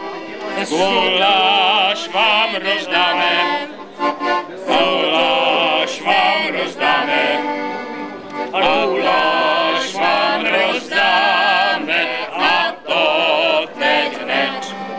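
A small mixed group of people singing a song together, accompanied by an accordion.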